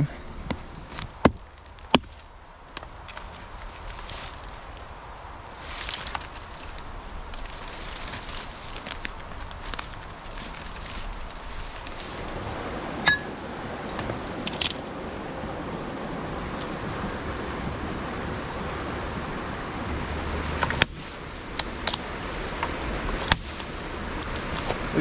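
Footsteps rustling and crunching through wet leaf litter and brush, with scattered sharp cracks of twigs. From about halfway a steady rushing noise, a creek, comes up under them.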